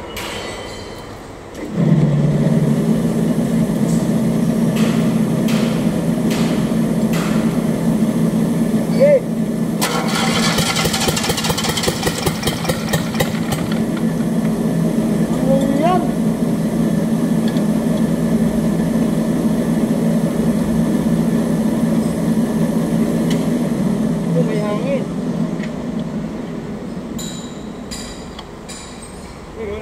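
Isuzu 3AD1 three-cylinder diesel engine sounding steadily for about twenty seconds, coming in suddenly about two seconds in and dying away near the end. A hissing burst rises over it about ten seconds in and lasts a few seconds.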